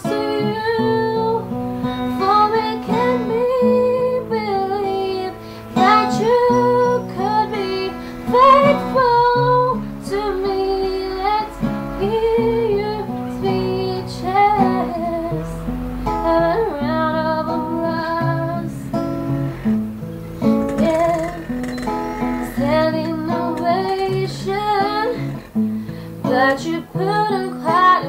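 A woman singing a slow pop ballad, accompanying herself on an acoustic guitar played in chords.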